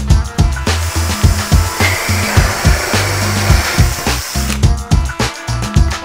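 Background music with a steady drum beat. Under it, from about one second in until about four and a half seconds, a cordless drill drives a hole saw through wood, giving a rough whirring cutting noise that then stops.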